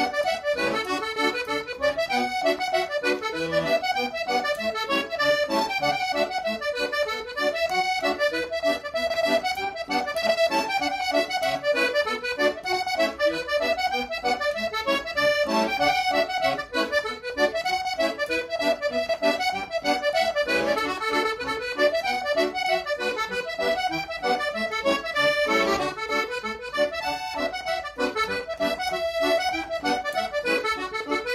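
Piano accordion playing a traditional dance tune solo, a steady run of quick melody notes over bass accompaniment.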